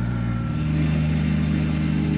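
Small tractor engines running steadily: first the ride-on machine levelling the ground with its roller drum, then, about half a second in, a different steady engine note from a Kubota compact tractor mowing grass.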